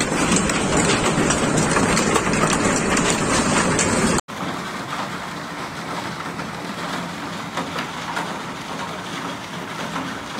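Hailstones pelting down in a heavy hailstorm, a loud, dense clatter of countless impacts. About four seconds in it cuts to a quieter, steady patter of hail on a wooden deck and foliage.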